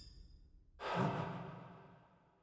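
A single breathy sigh that starts suddenly a little under a second in and fades away over about a second; just before it, the ring of a music hit dies out.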